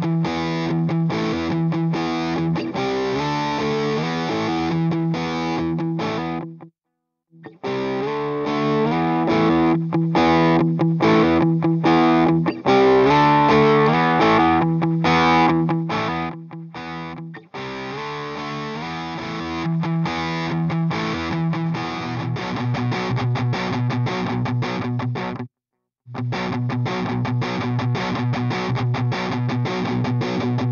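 Distorted electric guitar riff, a recorded guitar track reamped through a Bugera Infinium G20 valve amp head on its overdrive channel. The tone shifts as the tone-stack knobs are turned. The playback cuts out briefly twice, about 7 seconds in and near the end, and from about the middle on the riff turns into a faster, choppier rhythm with a heavier low end.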